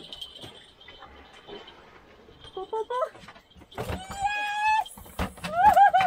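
A mahi-mahi being landed on a hand line, thrashing and slapping onto the wooden cockpit grating with a few sharp knocks near the end. Around it are excited human cries, including a held high-pitched one in the middle.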